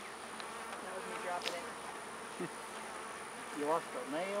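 Steady buzzing of many honey bees around an opened hive, with a comb frame covered in bees lifted out of it.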